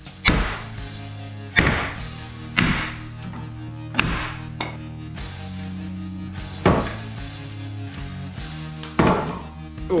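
Sledgehammer blows on wooden wall studs, knocking them loose from the bottom plate: about seven sharp knocks at irregular intervals, over background music.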